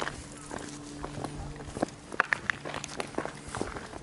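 Footsteps on loose gravel and crushed stone: an irregular run of short steps, several a second.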